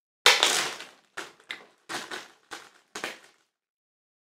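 Close-up crackling, crunching noises: one longer crunch about a quarter second in, then about six short crackles at uneven intervals.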